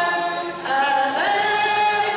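Many voices singing a hymn together in held notes, without audible instruments. The singing dips briefly about a third of the way in and resumes on a higher note.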